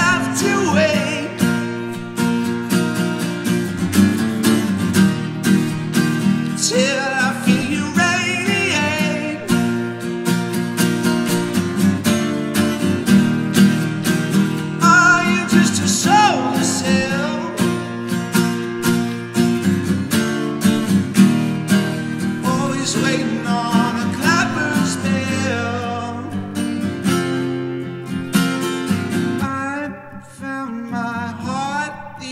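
Acoustic guitar strummed steadily, with a man singing over it in phrases separated by short guitar-only stretches.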